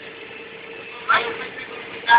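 Steady road noise inside a moving van, a low hum of engine and tyres, with a short burst of a voice about a second in.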